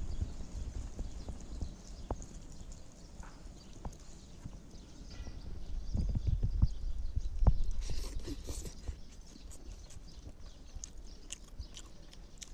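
Close-up eating sounds of a man eating rice and chicken curry by hand: wet chewing, lip smacks and scattered mouth clicks. The sounds are louder for a couple of seconds around the middle, as a handful of rice goes into the mouth, and sharp clicks continue near the end.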